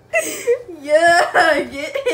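A girl's voice making a wordless, high-pitched whine that slides up and down in pitch in short wavering phrases, starting just after a brief quiet moment.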